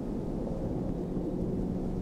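Wind rushing over the microphone during paraglider flight: a steady low rumble.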